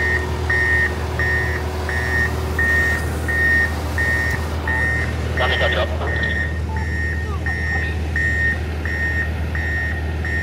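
A vehicle backup alarm beeping steadily, one high tone about 1.7 times a second, over the low steady drone of heavy diesel machinery running.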